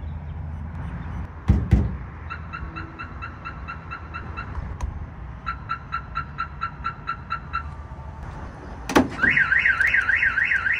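Aftermarket truck alarm responding to its shock sensor. Two knocks on the body are followed by two runs of short warning chirps, about six a second. Near the end a sharp bang as the Silverado's tailgate drops open sets off the full, fast-warbling siren.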